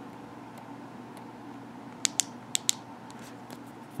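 Four short, sharp clicks in quick succession about two seconds in: the Klarus 360X3 flashlight's tail-cap 360 button being pressed to cycle through its light modes.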